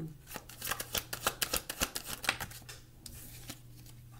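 A tarot deck being shuffled by hand: a quick run of card clicks and slaps for about two seconds, then a few fainter ones.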